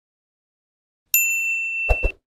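Notification-bell ding sound effect from a subscribe-button animation. About a second in, a single bright bell ding rings out and holds. Near the end it is cut across by two quick clicks.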